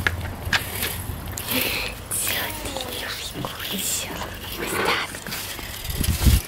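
Soft, indistinct talking, quiet and breathy, with no clear words.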